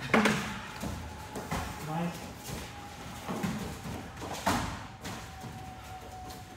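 Thuds from two martial artists sparring on foam mats, as they strike, clinch and move. There is a sharp impact right at the start and another about four and a half seconds in, with brief voice sounds between.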